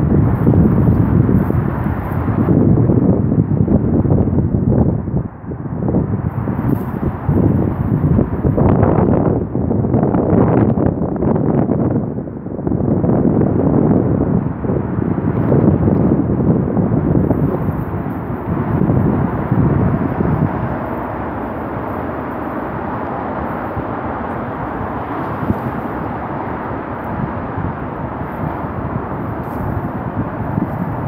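Wind blowing across the phone's microphone, coming in gusts for the first twenty seconds or so and then settling to a steadier level, with road traffic from the dual carriageway across the creek underneath.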